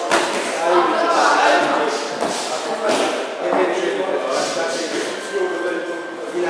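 Voices talking and calling out, echoing in a large hall, with a sharp hit right at the start, a boxing glove landing during sparring.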